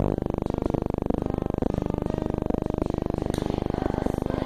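A fast, even, harsh buzz, a dropout in the recording that takes the place of the children's choir music; it starts abruptly and is muffled, with almost no treble.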